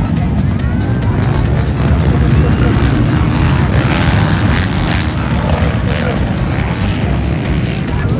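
A pack of dirt bikes racing, their engines revving and running hard over the track, mixed with loud music with a quick, regular beat.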